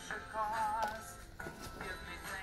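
A song with a singing voice plays quietly through a Chiayo Stage Man portable PA sound system, from an SD card, with sung notes wavering in pitch.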